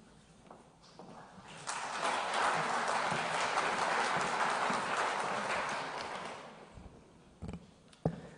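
Audience applauding. The clapping starts suddenly about two seconds in, holds steady, and fades out after about six seconds.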